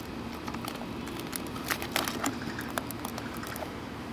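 Hands pressing electrical tape and a small piece of aluminium soda can down inside a cardboard box: a run of irregular small clicks and crinkles.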